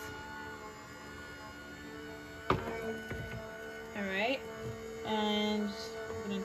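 Sizzix Big Shot Switch Plus electric die-cutting machine running, its motor humming steadily as it feeds an embossing-folder plate sandwich through on its own. A single sharp thunk comes about two and a half seconds in, and brief voice sounds follow twice in the second half.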